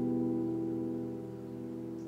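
Takamine cutaway acoustic guitar's last strummed chord ringing out and slowly fading away, the song's final chord left to decay.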